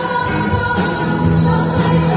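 Live band playing a song with several singers, the voices carried over guitars, keyboard and drums through the hall's sound system.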